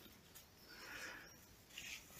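Near silence: faint outdoor background with a soft, brief sound about a second in.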